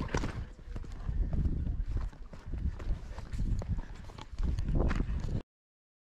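Footsteps crunching on rock and gravel, with wind rumbling on the microphone and knocks from the handheld camera. The sound cuts off suddenly near the end.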